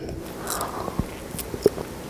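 A man sipping and swallowing water from a glass close to a headset microphone, with a few small clicks.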